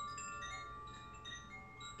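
Soft background music of ringing chime-like tones, single notes at different pitches sounding and fading one after another.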